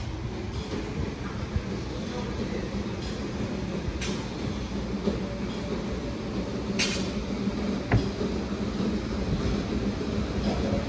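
A steady low mechanical rumble with a faint hum, with two short hisses about four and seven seconds in and a small knock near the end.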